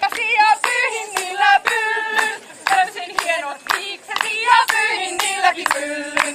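A group of women singing together to steady hand clapping, about three claps a second.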